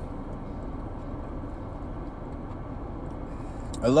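Steady low hum inside a car's cabin, with no distinct events. A man's voice starts speaking just before the end.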